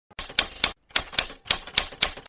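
Typewriter keys clacking in quick, uneven succession, about ten strikes in two seconds, with a brief pause about three-quarters of a second in.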